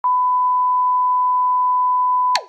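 A steady electronic test tone, the beep that goes with television colour bars, held as one unbroken, loud, pure note.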